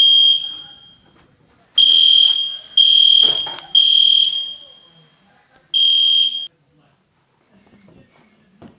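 Home security alarm keypad beeping as its keys are pressed: five high-pitched electronic beeps at one steady pitch, each fading out. The first comes at the start, three follow close together about two to four seconds in, and the last comes about six seconds in.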